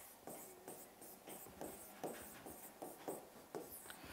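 Marker pen writing on a whiteboard: a string of short, faint strokes, about two or three a second, as letters are written and then underlined.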